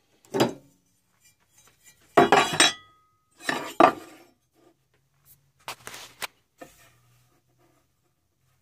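A string of sharp clinks and knocks of hard tools and metal being handled and set down on a workbench, loudest around two and four seconds in, with lighter taps around six seconds. No motor is running.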